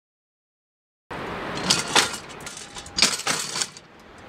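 Railway wheels rolling over the track, cutting in suddenly about a second in, with a steady rolling noise and several sharp metallic clacks in two pairs as the wheels pass rail joints or points.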